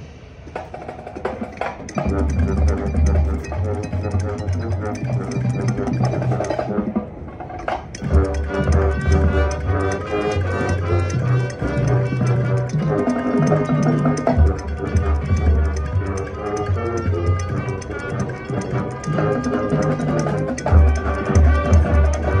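High school marching band playing its field show: sustained band chords over percussion. The sound is low at the start and the band comes in about two seconds in. After a short lull the full band plays on from about eight seconds.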